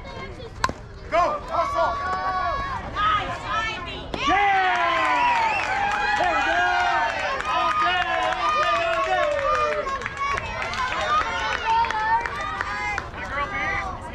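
A single sharp crack from the pitch at home plate just under a second in, then spectators and players shouting and cheering, many voices at once, swelling about four seconds in and carrying on loudly.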